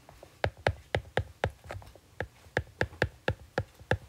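Stylus tip tapping and clicking on a tablet's glass screen while handwriting, a quick uneven run of sharp clicks, about four a second.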